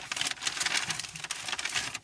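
Paper bag rustling and crinkling as a hand rummages inside it and lifts out a wrapped item, a dense run of quick crackles.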